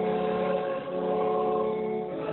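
Congregation singing a hymn in Afrikaans in long held notes, with a short break between lines just before one second in.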